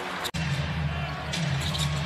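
Arena game sound on a basketball broadcast: a basketball being dribbled on the hardwood over steady crowd noise and a low hum. The sound drops out for an instant just after the start, at an edit.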